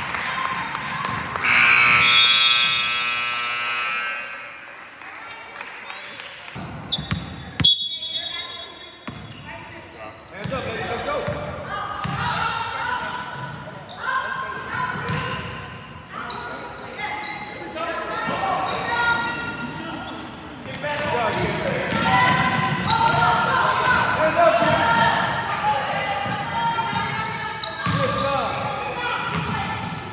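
Basketball game in a gym: a ball bouncing on the hardwood floor amid players' and spectators' voices. A held tone sounds from about two to four seconds in, and a short high whistle comes near eight seconds.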